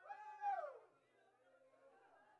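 A single drawn-out vocal cry, about half a second long, that falls in pitch near its end, over faint murmured praying.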